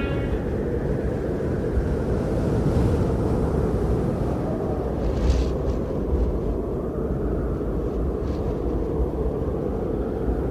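A steady low rumble of outdoor background noise, with no music playing.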